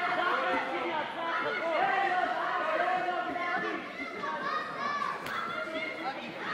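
Indistinct chatter of several people talking at once, echoing in a large sports hall. One short sharp click cuts through about five seconds in.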